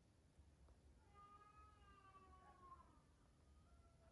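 A faint, drawn-out animal call with a whimpering, meow-like quality, lasting about two seconds and slowly falling in pitch, followed by a shorter one near the end.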